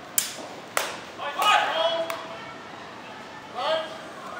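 Two sharp clacks of steel sidesword trainers striking, about half a second apart, followed by a man's shout lasting under a second and a short call near the end.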